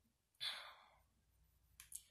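A man's short breathy exhale, a sigh, about half a second in, fading quickly, then a couple of faint mouth clicks near the end as he readies to speak again.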